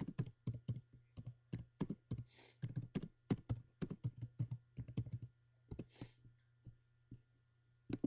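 Rapid, irregular taps and clicks close to the microphone, several a second, with two brief hisses among them, over a steady low hum.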